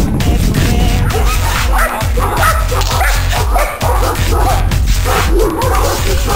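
Music, with a German shepherd barking over it.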